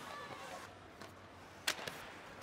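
Live ice hockey arena sound: a low murmur of voices, with one sharp crack of a hit on the ice about three-quarters of the way in, followed by a couple of lighter clicks.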